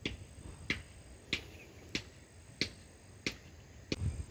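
Footsteps at a steady walking pace: seven sharp, clicky steps, one about every two-thirds of a second.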